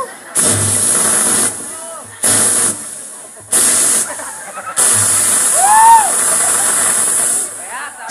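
A man making long hissing sounds into a handheld microphone, four separate spray-like hisses through the PA with a low hum under each, imitating a perfume spray. About six seconds in comes one short voiced cry that rises and falls in pitch.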